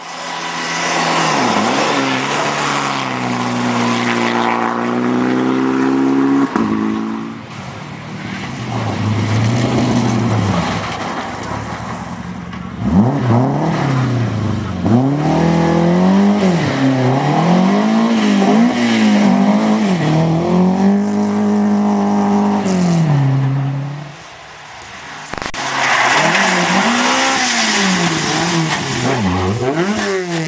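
Rally cars driven flat out on special stages, one after another: the engines rev hard, their pitch climbing and falling again and again as the drivers shift and lift, with loud tyre and road noise as each car passes close by.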